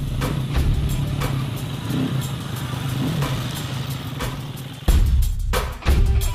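A motorcycle engine running steadily under intro music with a regular light beat. Near the end come two heavy low hits about a second apart.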